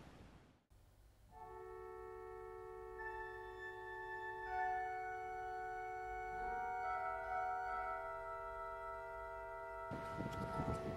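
Small 200-year-old Bishop & Son church pipe organ playing quiet, smooth, sustained chords that change slowly, starting about a second in.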